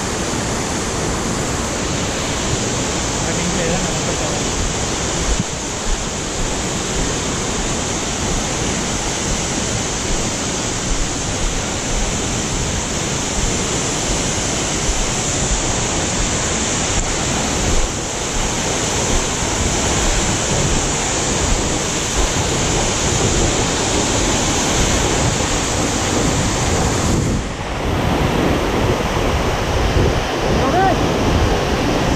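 Waterfall and the rocky stream below it, rushing water making a loud, even wash of noise that holds steady, with a brief dip near the end.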